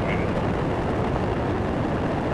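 Space Shuttle Atlantis's solid rocket boosters and three main engines during ascent: a steady, crackling low rumble.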